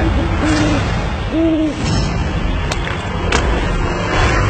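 Owl hooting: three short calls, each rising and falling, in the first two seconds, over a steady low rumble. Two sharp clicks come later.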